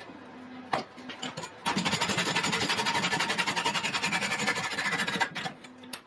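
Tombac (low-zinc brass) wire clamped in a steel bench vise being abraded by hand: a dense, continuous rasping that starts about a second and a half in and stops about a second before the end. A single sharp knock comes just before it.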